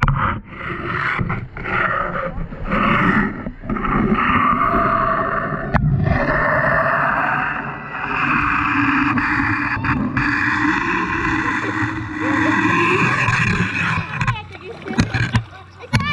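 Swimming pool water splashing and sloshing close to the microphone, with children's voices shouting and talking in the pool.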